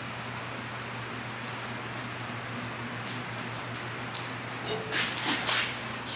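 Steady low hum of shop background, then, about five seconds in, a short cluster of knocks and scrapes as an alloy wheel and tire are pulled off the hub studs.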